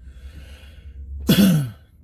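A man clears his throat once in a short, sharp burst about a second and a half in.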